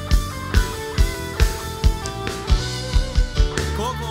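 Live band playing the instrumental opening of a Finnish schlager-pop song: a steady kick-drum beat a little over twice a second under electric guitar and other instruments. A singing voice comes in near the end.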